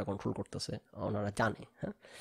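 Speech only: a man talking in short phrases with brief pauses.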